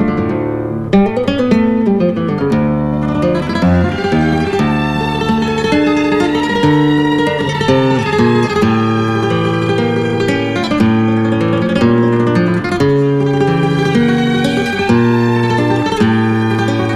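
Background music: an acoustic guitar piece of plucked notes and chords.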